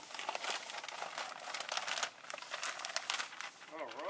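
Parchment paper crinkling and a slab of milk chocolate cereal bark cracking along its scored lines as the sheet is lifted. It makes a steady run of sharp crackles and snaps.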